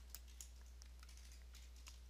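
Near silence with a few faint, light clicks of computer input, over a steady low hum.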